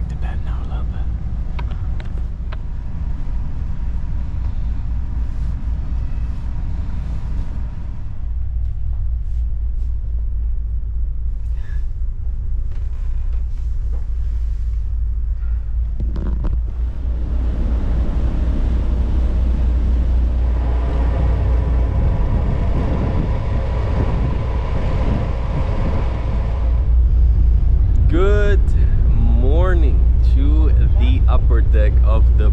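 Steady low rumble of a passenger ferry's engines running while under way. A broader hiss joins it past the middle and fades out near the end.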